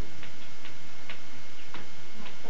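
Faint, irregularly spaced clicks, two or three a second, over a steady hiss.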